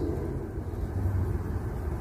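Steady low background rumble, with no other event standing out.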